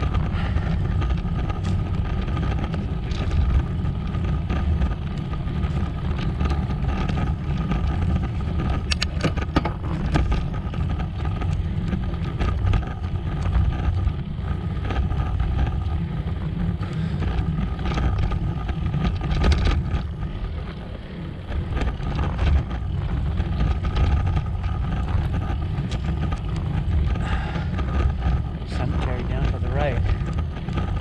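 Wind buffeting the microphone on a fast road-bike descent, a steady low rushing noise with the tyres rumbling on rough, cracked asphalt. A few sharp knocks come through about nine and twenty seconds in.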